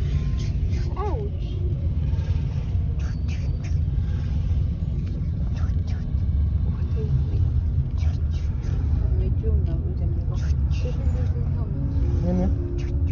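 Steady low rumble of road and engine noise inside a moving car's cabin, heard from the back seat, with scattered small clicks and a few brief voice sounds, one rising about a second in.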